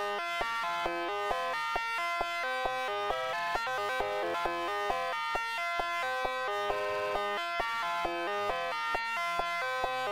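Homemade modular synthesizer playing a sequenced pattern of buzzy square-wave beeps that step up and down in pitch, over a sharp click about three times a second.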